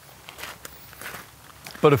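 Footsteps on gravel: a few quiet steps as a man walks up and stops. A man's voice starts near the end.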